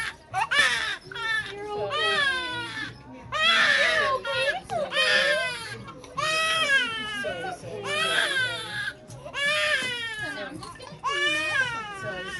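Five-month-old baby crying hard in a string of wails, each about a second long with short breaks between, in pain just after having her ear pierced with a piercing gun.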